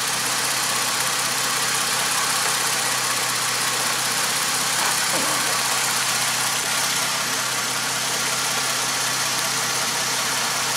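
Car engine idling steadily.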